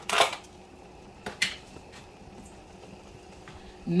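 A few short handling noises, quick knocks and rustles: the loudest just after the start, two more close together about a second and a half in, then a couple of faint ones.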